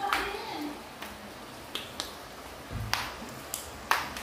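Steady hiss of rain falling on an open tiled terrace, broken by about half a dozen irregular sharp taps.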